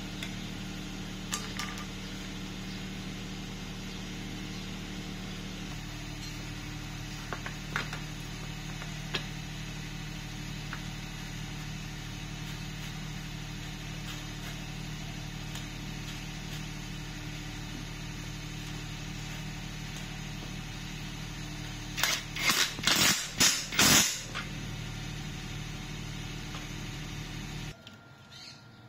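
A steady low mechanical hum in the background with a few light tool clicks, then a quick run of about six loud metallic knocks about three quarters of the way in as the bicycle's crankset is worked off the bottom bracket. The hum cuts off abruptly just before the end.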